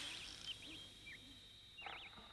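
Faint breathy blowing from children exhaling hard through pursed lips, fading in the first half second, with another short puff near the end. Small high chirps repeat throughout, like birdcalls.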